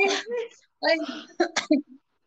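A woman's voice crying out "ai, ai" in short bursts, with a breathy noise about a second in.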